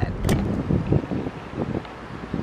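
Wind buffeting the camera microphone: an uneven low rumble with irregular gusts.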